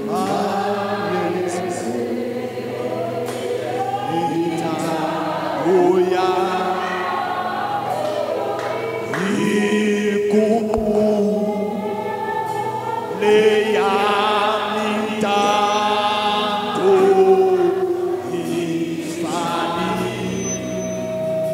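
Gospel worship singing: several voices sing a slow hymn together with long, drawn-out notes, led by a man on a microphone, over sustained low backing tones.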